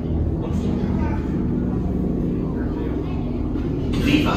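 Steady low rumble and hum of the attraction's starship ambience, with faint voices over it.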